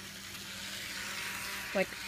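Small electric motor of a model train running, a steady high-pitched whirr.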